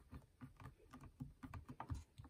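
Faint, quick soft taps, several a second, of fingertips pressing a rubber stamp down through the clear plastic plate of a stamping positioner to restamp an image.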